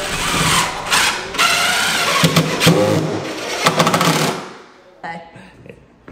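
Cordless drill driving a screw through the back of a wall-hung kitchen cabinet to fix it to the wall, the motor running loudly for about four seconds and then stopping.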